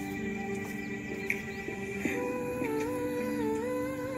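Recorded devotional prayer song playing: steady held notes, joined about halfway through by a sung melody that bends and turns.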